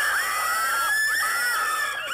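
A person's long, high-pitched squealing scream, its pitch arching and wavering as it is held.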